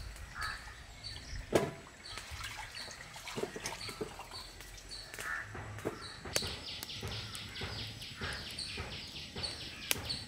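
A bird repeating a short high chirp about twice a second, breaking into a faster run of chirps in the second half. A few soft knocks come from raw potatoes being handled at a metal pot.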